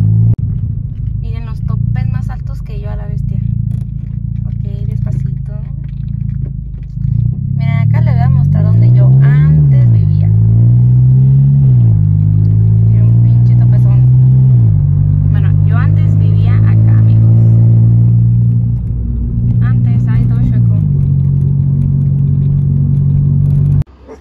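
A car's engine heard loud from inside the cabin while driving: its hum rises and falls in pitch several times as the car speeds up and slows, then holds steady, and cuts off suddenly at the end.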